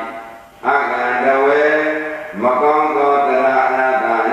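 A Buddhist monk chanting paritta verses in a slow, drawn-out single voice. There is a short breath about half a second in, then two long held phrases.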